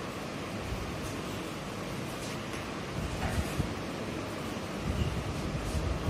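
Faint scratching of chalk writing on a blackboard over a steady background hiss.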